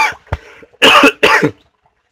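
A man coughing: a short throat-clearing burst at the start, then two loud coughs in quick succession about a second in.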